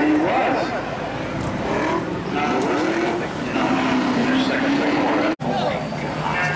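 Race car engines running on the speedway, one engine's pitch rising slowly and steadily in the second half as it accelerates, under spectators' voices. The sound cuts out for an instant near the end.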